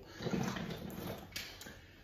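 Gear being rummaged through and handled in a bag: soft rustling, with a sharp click a little over a second in.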